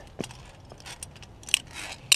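Scattered light clicks and scrapes of via ferrata lanyard carabiners on the steel safety cable and rock, with a sharper metallic clink about one and a half seconds in.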